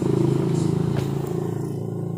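A motorcycle engine running by, a steady hum that is loudest in the first second and slowly fades.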